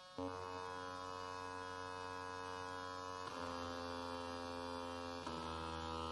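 Electronic atonal music: dense, buzzy sustained tone clusters held like drones, entering abruptly just after the start and switching suddenly to a new cluster twice.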